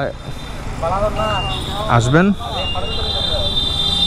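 A man's voice speaking briefly twice over a steady low rumble of roadside traffic. A thin, steady high-pitched tone comes in about halfway through and holds.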